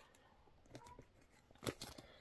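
Tarot cards being drawn from a deck by hand: faint papery rustling with a few short card snaps, once about three quarters of a second in and twice near the end.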